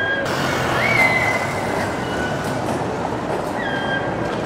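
Busy city-square ambience: steady traffic and crowd noise, with a few short high tones coming and going.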